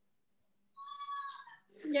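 A cat meowing once: a single high, drawn-out call of under a second that starts about a second in.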